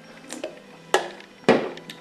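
A man drinking from a can: three short gulping sounds about half a second apart, the last the loudest.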